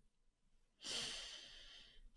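A single breath close to the microphone, a noisy hiss about a second long that starts sharply a little under a second in and fades away.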